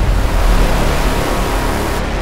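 Logo-reveal sound effect: a loud rushing burst with a deep rumble underneath, slowly dying away.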